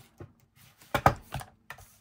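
A few sharp plastic clicks and knocks as a Fiskars paper trimmer is handled and card is laid on it to be lined up for a cut. The loudest clack comes about a second in.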